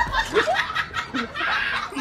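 A person laughing in short, broken bursts.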